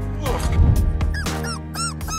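A puppy yipping in short, high, rising-and-falling cries that start about a second in and come in quick succession, over steady background music.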